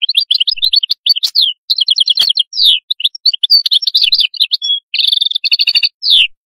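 European goldfinch singing: a fast, twittering song of rapid chirps and trills, broken by a few short pauses.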